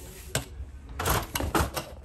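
A brush on a long telescopic pole knocking and scraping against a rendered house wall and eaves: one sharp click, then a quick run of clicks and scrapes.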